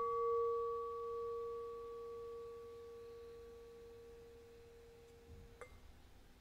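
A single bell-like tone, struck just before this moment, ringing with a low and a higher pitch and slowly fading with a slight wobble over about five seconds. It cuts off with a small click near the end.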